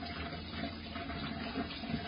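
Tap water running steadily into a stainless steel sink while hands are rinsed under the stream.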